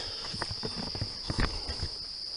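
Footsteps and rustling on the forest floor, a run of irregular short knocks that dies away near the end, over a steady high-pitched insect drone.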